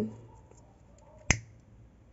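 Disposable lighter struck once: a single sharp click a little over a second in as it lights.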